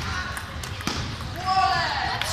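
Table tennis ball hitting bats and table in a few sharp clicks, with a voice calling out in the second half.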